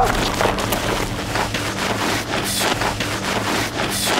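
Scuffling and scraping on gravelly dirt as a person throws himself down and writhes on the ground, an uneven crackling rustle with no voice.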